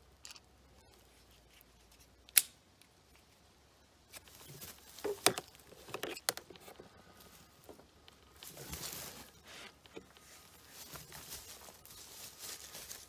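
Handling noises at the test stand: scattered sharp clicks and knocks, the loudest about two seconds in, with rustling and scraping as the plastic jug is shifted against the gel block on the wooden stand.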